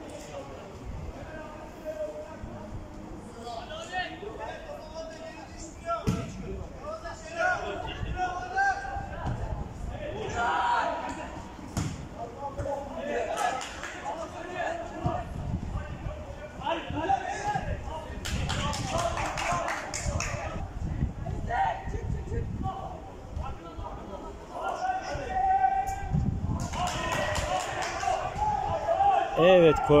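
Indistinct voices calling and shouting during football play, with a few sharp thuds of a football being kicked, the clearest about six seconds in and again near twelve seconds.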